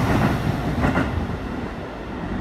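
A Keikyu limited-express train running through a station without stopping, its wheel and running noise slowly dying away as the last cars clear the platform.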